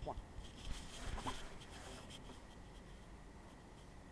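Faint, brief voice sounds, once at the very start and again about a second in, over a quiet, steady background hiss.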